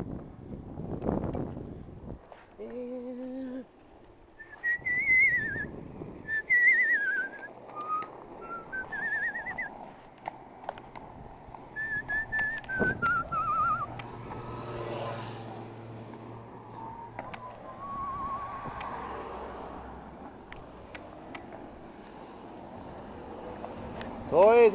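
A person whistling a tune in several short, wavering phrases, with a brief laugh about halfway through.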